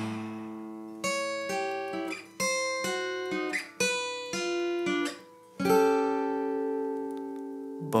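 Acoustic guitar played alone: a run of picked single notes and short chords, each struck sharply and left to ring, ending on a chord that rings out and fades for about two seconds.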